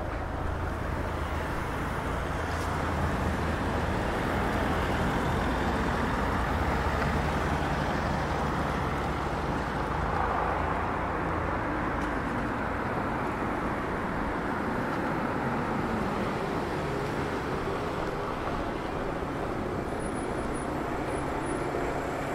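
Road traffic on a city street: a steady rush of passing cars that swells in the first half and eases slightly later.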